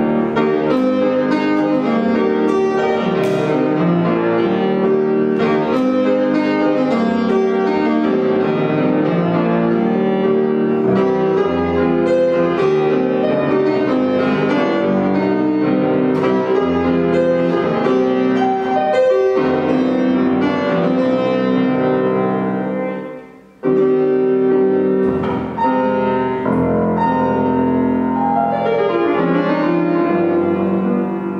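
1835 Aloys Biber fortepiano from Munich being played: a continuous passage of dense running notes on a historical Romantic-era piano, which she calls very unusual in sound. There is one brief break in the playing about three quarters of the way in.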